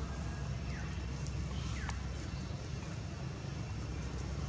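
Outdoor background noise: a steady low rumble, with two short high chirps that fall in pitch, about one and two seconds in.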